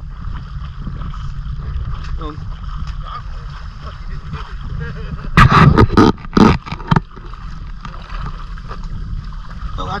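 Wind rumbling on a handheld camera's microphone while wading in a river, with water moving around the legs. About five and a half seconds in, a quick run of several loud sudden noises close to the microphone.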